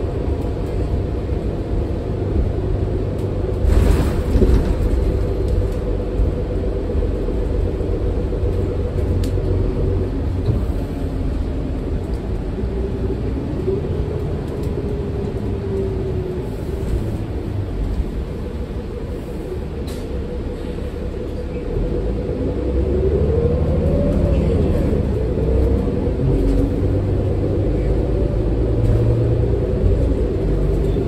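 Ride noise inside a New Flyer XD40 city bus under way: the rear-mounted Cummins L9 inline-six diesel and Allison transmission running with a steady low rumble. A drivetrain whine glides up and down in pitch twice, the second time as the noise grows louder near the end. There is a single knock about four seconds in.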